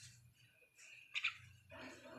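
Two short, faint calls from a tame black pet bird, close together about a second in, followed by a softer, lower sound near the end.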